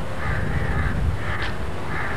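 A bird calling three times, the first call longest, over a steady low rumble.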